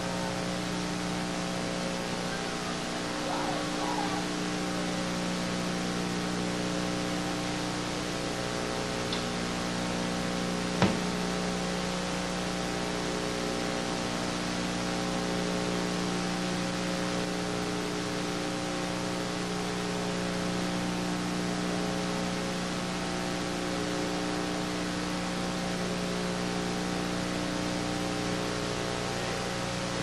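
Steady hiss and electrical mains hum of an old live cassette bootleg recording, with no music playing, and a single sharp click about eleven seconds in.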